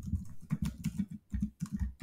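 Computer keyboard being typed on: a quick run of keystrokes, about six a second.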